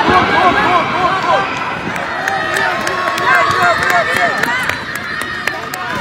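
Many spectators' voices overlapping, shouting and calling out encouragement in short rising-and-falling calls.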